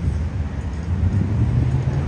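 Outdoor city ambience: a low, steady rumble of street traffic mixed with wind on the microphone.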